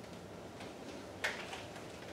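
Quiet room tone with one short, soft rustle or knock about a second in and a few faint ticks.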